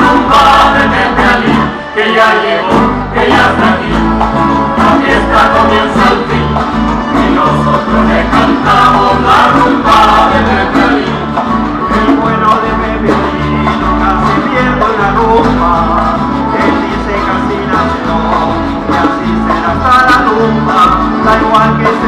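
A live folk band plays a rumba on accordion, plucked lutes and guitars over a rhythmic electric bass line, with a brief drop in loudness about two seconds in.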